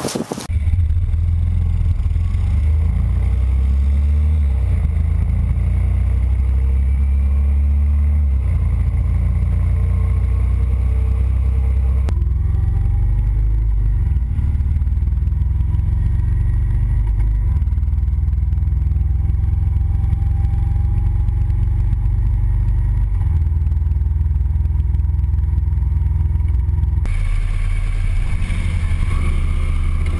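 A motorcycle riding along, recorded from a camera on the rider or the bike: a steady engine drone mixed with heavy wind rumble on the microphone. It starts abruptly just after the beginning and shifts abruptly twice more, near the middle and near the end.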